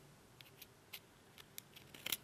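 Faint, short scraping clicks, about six of them, from a hand deburring tool drawn along the cut edge of an aluminum panel to shave off slag and burrs.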